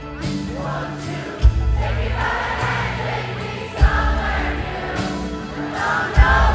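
Live rock ballad played by a band, with singing over it and heavy drum and bass hits about every two and a half seconds, the low end heavy as heard from within the concert crowd.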